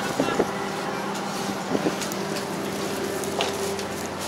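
A steady low mechanical hum with faint background voices and a few light knocks.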